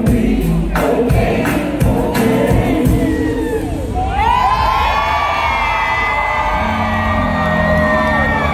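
Live band playing with a drum beat, then from about four seconds in the crowd sings along and cheers in many sustained, wavering voices over held notes from the band.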